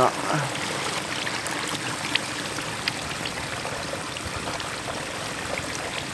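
Water trickling and sloshing steadily as hands move through a net of small fish and green plant matter sitting in shallow water. A few faint ticks and splashes are heard over it.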